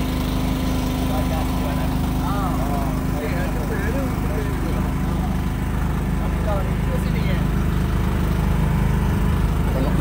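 A small engine on the boat running steadily with an even hum, with faint voices in the background during the first half.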